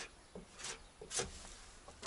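Putty knife spreading body filler over the steel rear body panel of a ZAZ-968M: three short, faint scraping strokes.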